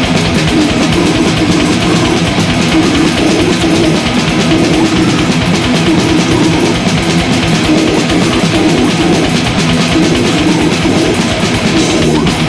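Death metal band playing live: heavily distorted electric guitars over very fast, dense drumming, loud and unbroken.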